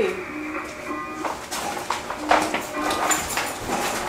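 A flat, monotone computer-generated voice reading an emergency broadcast message from a TV, over a faint background music bed.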